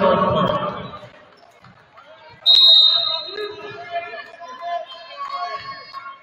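A volleyball referee's whistle blows one sharp, steady, high blast about two and a half seconds in, amid gym chatter. A burst of shouting voices comes at the start.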